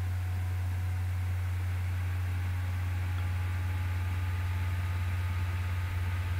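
Steady low-pitched hum with a faint hiss, unchanging throughout: background noise of the recording setup while nobody speaks.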